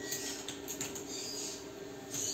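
A few faint scratchy ticks and rustles of fingers handling sewing thread at a zigzag sewing machine's thread tension disc and check spring, over a faint steady low hum.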